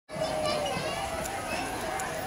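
Indistinct background chatter of people, children's voices among them, running on steadily with no words standing out.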